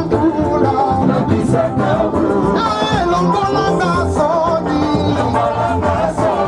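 Live Congolese gospel band music with sung vocals and a steady beat, played loud through the concert sound system.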